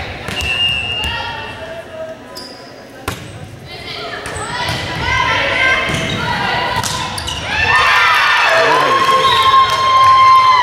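Volleyball rally in a large gym: the ball is struck with sharp smacks, among players and spectators calling out. Near the end the voices swell into shouting and cheering as the point is won.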